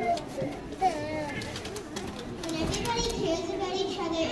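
Many children's voices chattering and calling out at once, with a few scattered clicks and a brief knock about a second in.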